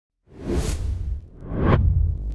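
Two whoosh sound effects from an animated logo intro, over a deep bass rumble: the first swells in a quarter second in, and the second rises to a peak near the end.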